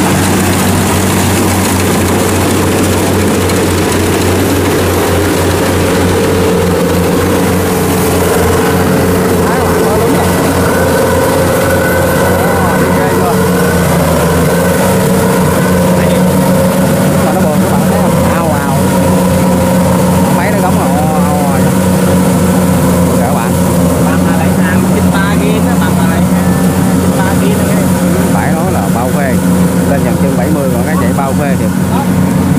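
Kubota DC70 Pro combine harvester with a 75-horsepower engine, running steadily under load as it harvests rice on tracks through soft mud. It makes a loud, continuous drone.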